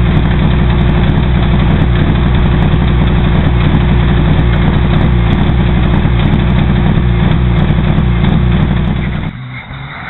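Mitsubishi Lancer Evo VIII rally car's turbocharged four-cylinder engine idling steadily close by. The sound drops off abruptly near the end.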